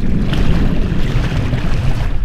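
Wind buffeting the microphone over choppy sea water: a loud, steady, low rumbling rush with no distinct events.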